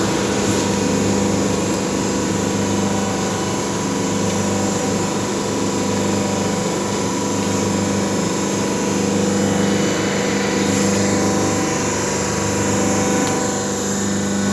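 Semi-automatic hydraulic single-die paper plate machine running, its electric motor and hydraulic pump giving a steady hum.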